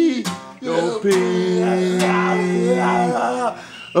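Guitar strummed in chords while men sing along in long held notes, the playing dropping away briefly just after the start and again near the end.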